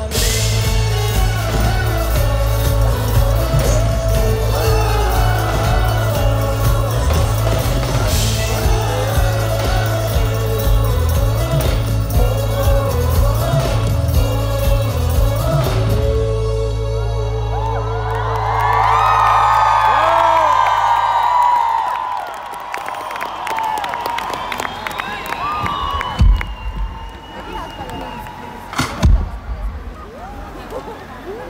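Live pop-rock band playing a loud, bass-heavy song that closes on a long held note about sixteen seconds in. The music then stops and the crowd cheers and whoops, settling into quieter crowd noise with a couple of sharp thumps near the end.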